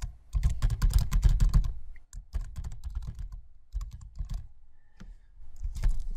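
Computer keyboard typing: a quick run of keystrokes for the first two seconds, then slower, scattered key presses with a short lull near the end.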